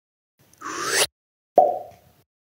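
Logo sting sound effect: a short rising whoosh that cuts off abruptly, then about half a second later a single hit with a mid-pitched ring that fades away.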